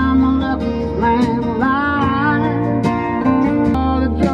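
A song with guitar and a singing voice, played loudly on a car stereo through BimmerTech Alpha One door speakers and under-seat subwoofers, heard inside a BMW M4's cabin. The bass is deep and strong.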